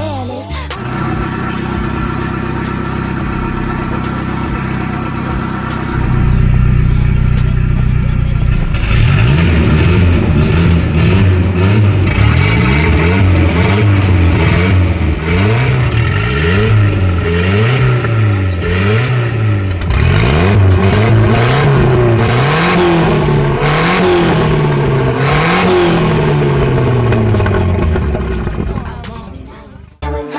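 Turbocharged Volkswagen Saveiro engine idling steadily, then louder from about six seconds in. From there it is revved again and again, each rev rising and falling in pitch over about a second.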